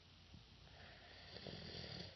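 Near silence: faint room tone, with a soft breathy hiss that swells a little in the second half.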